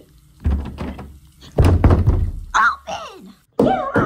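Dull thuds of banging on a closed interior door: one knock about half a second in, then a heavier pounding around two seconds in. Voice sounds follow near the end.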